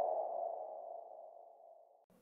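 The ringing tail of an electronic intro sting: one mid-pitched tone fading out over about a second and a half.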